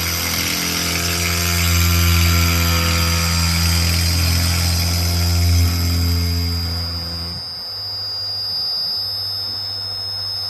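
Milo v1.5 mini CNC mill running its spindle and end mill through a plastic workpiece: a loud low machine hum under a hiss of cutting, with a thin steady high whine on top. About seven seconds in the hum and cutting noise stop abruptly, leaving the high whine going as the tool lifts clear of the part.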